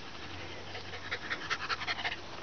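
A dog panting, then licking at a hand, with a quick run of short wet mouth clicks from about a second in.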